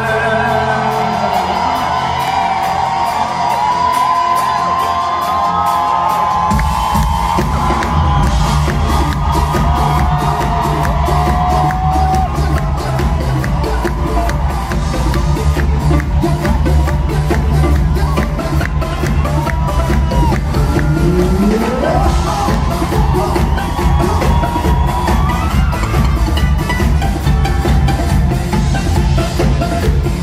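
Live band playing loud pop music with the audience cheering and whooping; a heavy bass and drum beat comes in about six seconds in and carries on.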